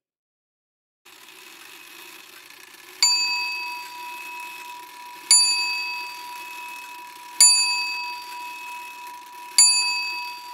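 A bell-like metallic ding struck four times, about two seconds apart, each ringing on and fading slowly, over the faint steady hiss of vigorously boiling sugar syrup.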